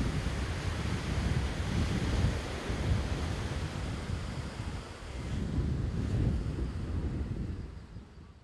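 Surf washing on a sandy beach, swelling and easing in long surges, with wind rumbling on the microphone; it fades out near the end.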